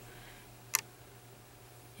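A single short, sharp click about three-quarters of a second in, over a faint steady low hum.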